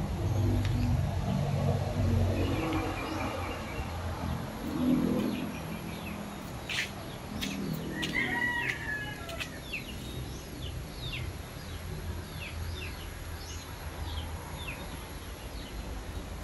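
Small birds chirping: a run of short, quick, falling chirps through the second half, with a brief warbling call about eight seconds in. A low rumbling background fills the first few seconds.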